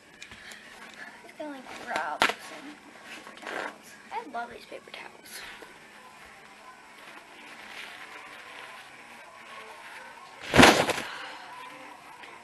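Brief bits of a girl's muffled voice, then a loud short burst of handling noise on the handheld camera about a second and a half before the end.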